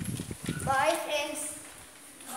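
A run of quick, dull low knocks in the first half second, then a child's short spoken utterance.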